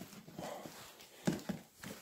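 DeWalt plastic toolbox being handled at its latch and handle: a soft scuffing, then two short plastic knocks a little over a second in.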